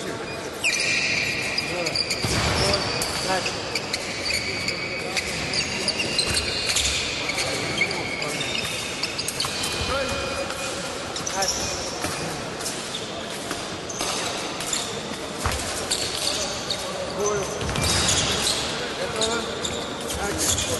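Fencers' shoes squeaking and pattering on the sports-hall floor as they move up and down the piste, with scattered sharp knocks and voices in a reverberant hall.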